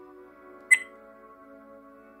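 A single short, sharp electronic beep from the camcorder, about a third of the way in, as its record button is pressed, over soft background music.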